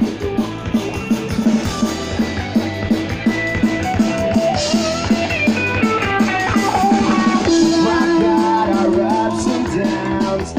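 Rock band music with a steady drum-kit beat, guitar and singing, played loud through a PA sound system.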